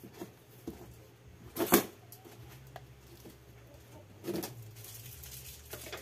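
A cardboard box being opened: a knife slitting the packing tape and the cardboard flaps being handled, with small clicks and two short, louder rasps, the loudest about a second and a half in and another about four and a half seconds in.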